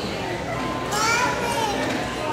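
Children's voices calling out in a large echoing hall, one high voice rising and falling about a second in, over a steady background hubbub.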